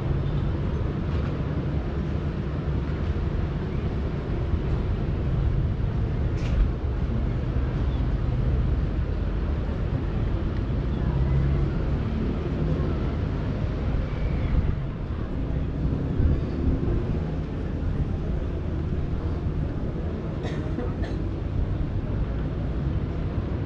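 Steady low rumble of open-air ambience high above the city: wind on the microphone over distant boat and city noise, with a few faint clicks and snatches of voices.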